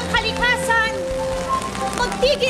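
Steady rain falling on an umbrella and wet pavement, heard under music and a voice.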